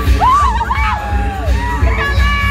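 Up-tempo jive dance music playing over a hall's sound system, with a strong beat. Just after the start, a voice rises and falls for over a second above the music.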